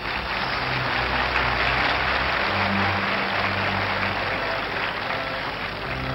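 Audience applauding and cheering over a live orchestra playing sustained chords.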